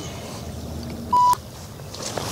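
A single short electronic beep: one steady pure tone lasting about a fifth of a second, a little over a second in. It sounds over the steady rush of a flowing river.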